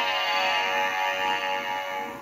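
Animated plush Christmas toys, a dancing snowman and a dancing tree, playing music through their built-in speakers: one long held electronic chord, the close of their song, fading a little near the end.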